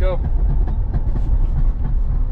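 Steady low rumble of road and wind noise inside a moving vehicle's cabin, loud on the microphone.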